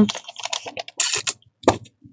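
Paper being handled as the pages of a spiral-bound planner are flipped and shuffled: a quick, irregular run of light rustles and clicks, with a louder, hissier rustle about a second in.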